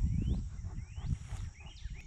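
A bird giving three short rising whistled notes, evenly spaced, over a steady high insect drone and a low rumble.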